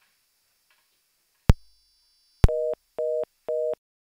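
Two sharp clicks on a telephone line, followed by a telephone busy signal: three short two-tone beeps, about two a second.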